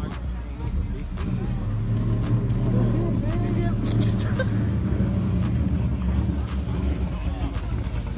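Mercedes-Benz sedan's engine running with a steady deep drone as the car rolls slowly, growing louder about a second in, with people's voices over it.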